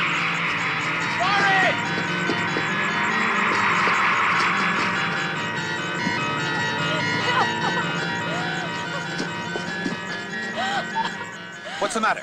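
Horror film score: a sustained low drone with held tones under a high swell that falls away and fades out by about halfway through. A few short, arching cries are heard over it.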